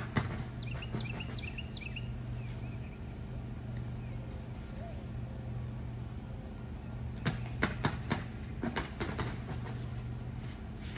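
Bamboo stakes clicking and knocking together as string is wound and pulled around their tied tops, mostly a cluster of sharp knocks about seven to nine seconds in. A bird chirps several times in the first two seconds, over a steady low background hum.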